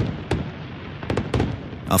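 Aerial fireworks going off: several sharp pops and crackles scattered over a steady background of noise.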